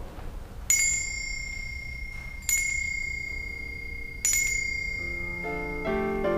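Altar bell struck three times at the elevation of the consecrated host, each strike ringing out on a clear high tone and fading. Soft keyboard music comes in under the last strikes and grows near the end.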